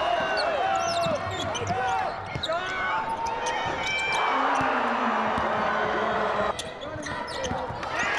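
Basketball game sounds on a hardwood court: a ball dribbled and sneakers squeaking in short chirps. A burst of crowd cheering about four seconds in, after a basket, cuts off sharply about two and a half seconds later.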